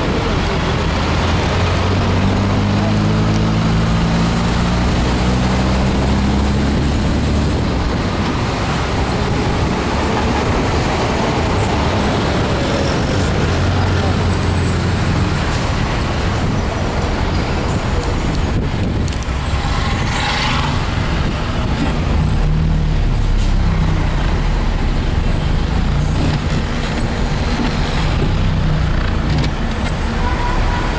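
Car engine and tyre noise heard from inside the cabin while moving slowly in heavy traffic, with the engine note shifting during the first several seconds. A brief hiss comes about twenty seconds in.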